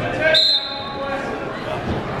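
Referee's whistle blown once, short and high, signalling the start of a wrestling bout, in an echoing gym with voices around it.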